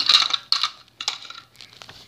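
Short clinks, rattles and clicks of small hard objects being handled: a few brief bursts in the first half, then sharp clicks near the end.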